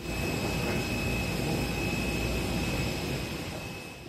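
Steady high whine of a parked airliner's turbine over a low rumble, easing slightly near the end.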